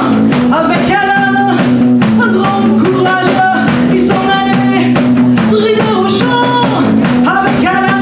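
A woman singing French lyrics into a microphone over a live rock band, with a steady bass line and regular drum-kit beats.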